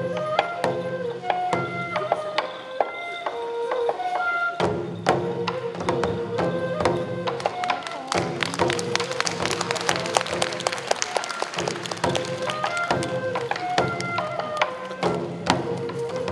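Live Japanese folk-music accompaniment for a taue odori rice-planting dance: taiko drums beat under a melody that steps between held notes. In the middle the drumming thickens into a dense run of rapid taps before the melody returns.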